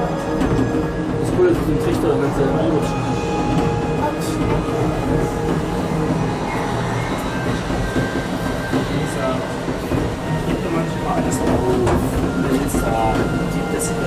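Monorail car running along its track, heard from inside the car as a steady running noise, with music and voices mixed in.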